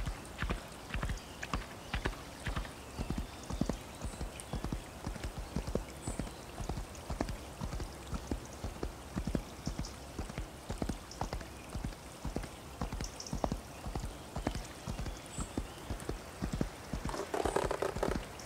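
Horse hooves running over forest ground, a quick unbroken run of hoofbeats several a second, with a short rushing sound just before the end.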